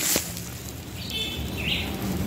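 A bird calling briefly about a second in, a short high chirp followed by a second note, over a low outdoor background hiss.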